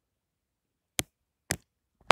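Two short, sharp clicks about half a second apart, the first about a second in, with dead silence between and around them.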